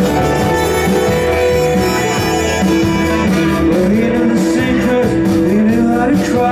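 Live band music: trumpet and saxophone over electric guitar and upright bass, holding long notes and then sliding between pitches in the second half.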